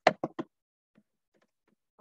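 Computer keyboard keystrokes: a quick run of about four sharp clicks at the start, then a few faint taps.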